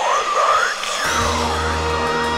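Drum and bass record playing: a breakdown with the bass gone, gliding synth tones rising and falling, then a deep steady bass and sustained chords come back in about halfway through.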